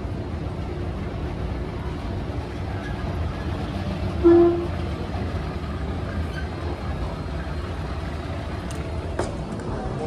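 Escalator running with a steady low rumble, with a single short beep about four seconds in and a few light clicks near the end.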